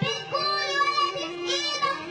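A young girl singing solo into a microphone, in long held notes that bend and waver.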